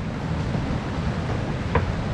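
Steady outdoor rumble of wind on the microphone and surf at the shore, with no voices.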